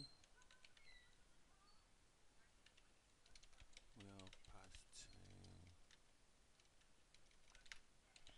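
Faint typing on a computer keyboard: irregular, scattered keystrokes as a message is typed, with a short murmur of a voice about four to five seconds in.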